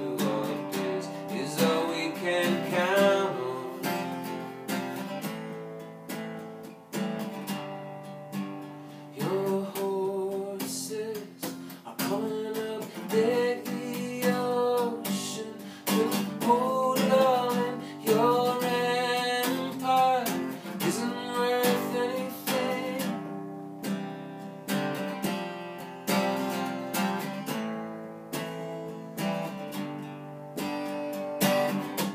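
Steel-string acoustic guitar strummed steadily, with a man singing over it in phrases that come and go, most of the singing in the middle of the stretch.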